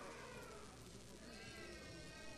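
Two faint, high-pitched vocal calls over low room noise, the second starting about a second and a half in and falling slightly in pitch.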